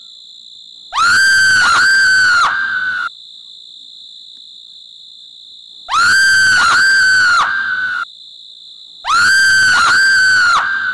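A shrill, very high-pitched shrieking vocal sound effect, given to the Satan figure. It comes in three alike bursts of three or four rising-and-falling cries each: about a second in, about six seconds in, and just before the end. Between them, a steady high insect chirring of night crickets carries on.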